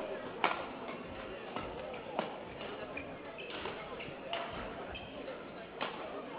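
Sports-hall ambience between badminton rallies: a low murmur of spectators, with a few short sharp clicks and squeaks scattered through it, the most distinct about half a second, two seconds and near six seconds in.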